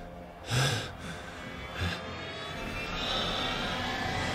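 A man's sharp, strained breath about half a second in and a shorter one just before two seconds, over a quiet trailer music drone that slowly swells toward the end.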